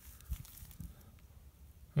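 Quiet pause with faint low rumble and a couple of soft knocks, as a hand handles a buried electrical cable in the dirt of a trench.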